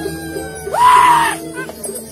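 A person's loud high scream, about half a second long, a little before the middle, over Balinese gamelan music with a steady repeating beat.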